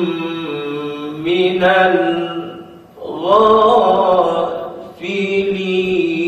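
A man's solo voice reciting the Quran in taranum style, in the Jiharkah melody, with long held, ornamented notes. About three seconds in he pauses for breath. He then climbs into a higher, more ornamented phrase, and pauses briefly again near the end.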